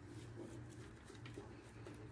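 Almost silent room with a steady low hum and a few faint, soft scrapes of a silicone spatula pushing cake batter out of a bowl into the pan.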